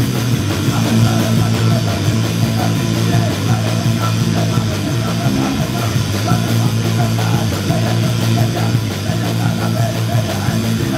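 Hardcore punk band playing live: distorted electric guitar, bass and drums going loud and continuous.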